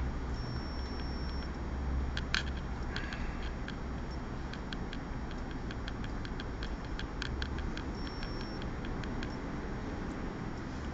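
Light, irregular clicks and taps of brushes and small ceramic paint dishes being handled at a palette, most of them between about two and nine seconds in, over a steady low hum.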